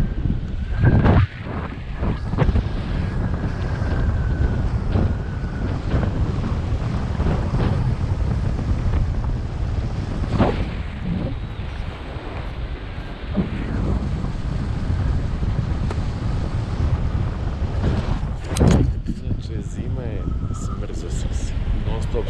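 Wind buffeting the camera microphone during paraglider flight: a heavy, steady low rumble throughout, broken by a few sharp knocks, with a faint steady high tone in the first several seconds.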